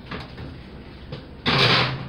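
Baking sheet being slid into place under a casserole dish: a short scraping rush lasting about half a second, near the end, after a quiet stretch.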